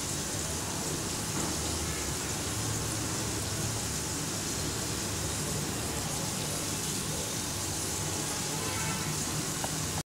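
Steady sizzling hiss of yam slices pan-frying in oil on an iron tawa.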